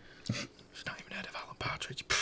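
Faint murmured and whispered voices, with a few small clicks and taps scattered through.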